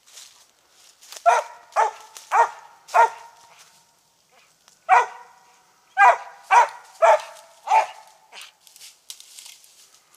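A Treeing Mountain View Cur barking in two quick runs of short, sharp barks, four and then five, the chop of a hound barking up at a squirrel it has treed.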